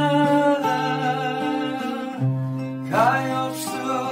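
Cutaway acoustic guitar playing a slow song. A sustained melody line runs over it and glides upward about three seconds in.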